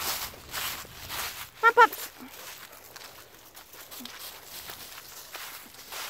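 Footsteps crunching and rustling through dry fallen leaves, loudest in the first second and a half and then softer and more scattered. A short high-pitched voice-like sound comes just under two seconds in.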